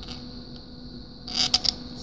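Faint steady background hum and hiss. About a second and a half in comes a brief scrape with a few clicks, as a screwdriver tip is moved over the ridged surface of a red PLA test print.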